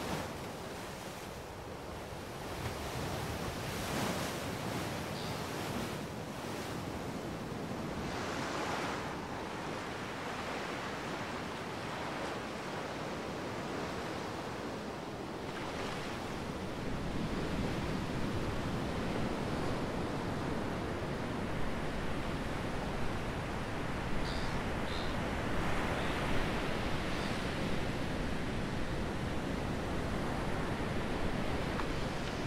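Ocean surf breaking on a sandy beach, the waves rushing in and washing out. It swells several times in the first half, then grows louder and steadier.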